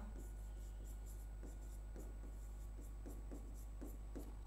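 Faint taps and scratches of a pen writing on an interactive display board: a run of short strokes, over a faint steady hum.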